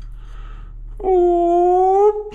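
A single long vocal note held at a steady pitch for about a second, starting about a second in and rising slightly at the end.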